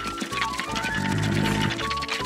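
Cartoon background music with held notes, and about a second in, a short low grunt from a young animated dinosaur.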